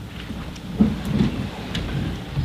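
A room of people sitting back down: chairs moving and shuffling, with low bumps, the loudest a little under a second in.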